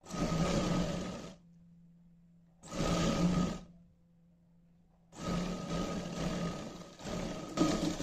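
Surya sewing machine running in three bursts of stitching along a folded fabric strip: about a second and a half, then about a second, then nearly three seconds, with short quiet pauses between.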